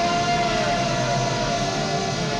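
One long, steady held tone with several overtones, the sustained note that closes a cartoon transformation sequence, easing off slightly near the end.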